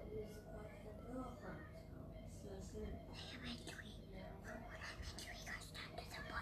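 Faint whispered speech over low room noise, a little more active in the second half.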